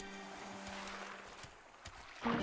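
Film soundtrack music dying away to a faint, even hiss with a few soft ticks.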